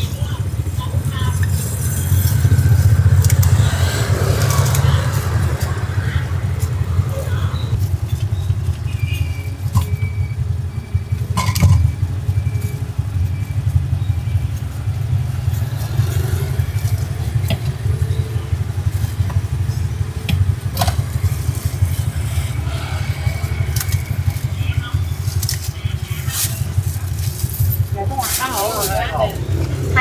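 A motorbike engine idling close by, a steady low hum, among street traffic. Faint voices, and now and then a short click or rustle of food being packed in plastic bags and banana leaf.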